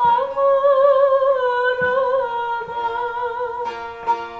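A woman sings a Turkish folk song (türkü), holding a long wavering note for about two seconds and then easing down, while a bağlama (long-necked saz) plucks a few notes beneath her.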